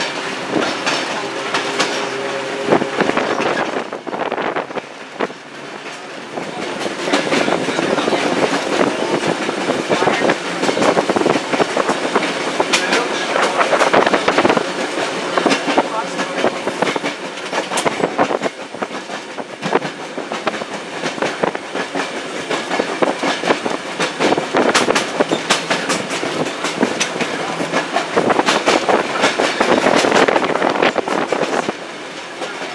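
Open-air electric trolley car running along its track: a steady running noise with the wheels clacking irregularly over the rail joints. The noise dips briefly about four to six seconds in.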